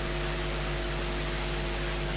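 Steady background hum with hiss, made up of several fixed low tones with no change: the electrical and room noise of the microphone and sound system.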